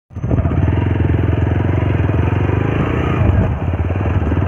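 Motorcycle engine running steadily as the bike is ridden, a fast even putter of firing pulses.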